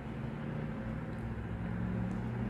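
Steady low background hum: room noise.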